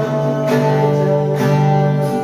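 Solo acoustic guitar playing chords, with a new chord struck about a quarter of the way in and another past halfway.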